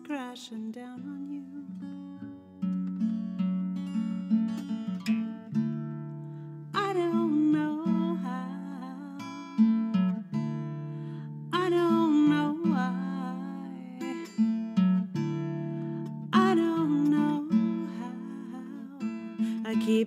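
Acoustic guitar playing chords in a slow song, with a melody that bends in pitch in three phrases over it.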